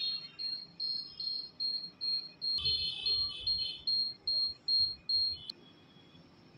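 Electronic apex locator beeping while an endodontic file in a root canal is connected to it: a steady series of short high beeps, about two and a half a second. The beeps signal that the file tip is nearing the root apex during working-length measurement. They cut off near the end.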